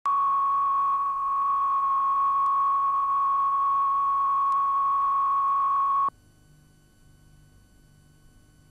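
Steady reference test tone at about 1 kHz, the line-up tone that plays with colour bars at the head of a videotape. It cuts off abruptly about six seconds in, leaving only a faint background hum.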